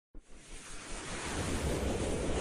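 Whoosh sound effect of an animated logo intro: a rush of noise that starts abruptly and swells steadily louder.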